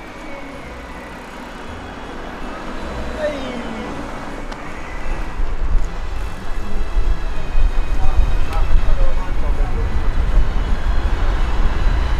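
A group of roller skaters and cyclists rolling along a street: a rumbling, uneven noise that grows louder about halfway through, with faint shouting voices.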